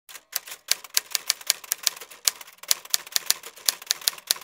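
Typewriter keys striking in a quick, slightly uneven run of sharp clacks, about six a second.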